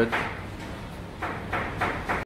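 Raw lamb necks being handled and laid into a heavy salt-lined basin, with two soft thuds about a second and a half in and just before the end.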